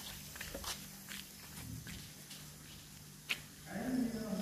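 Distant chanted dawn call to prayer from a mosque loudspeaker: a pause between phrases with a low hum and a few faint clicks, then a new phrase sets in with a rising voice near the end.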